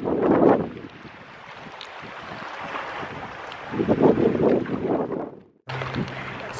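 Wind buffeting the microphone outdoors in gusts: loud at first, quieter for a few seconds, then gusting again, before the sound cuts off abruptly near the end.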